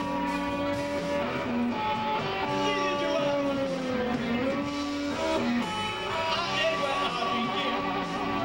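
Live rock band playing, with electric guitars, bass and drums. A held note dips in pitch about four seconds in and rises back.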